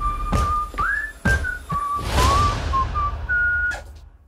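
A tune whistled over trailer music: a single thin line of notes that steps and slides up and down, with several heavy low hits under it. It fades out near the end.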